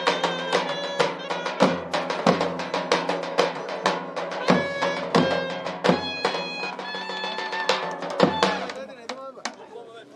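Live Turkish folk dance tune on violin and clarinet over steady strokes of a davul bass drum. The music stops about nine seconds in, leaving crowd chatter.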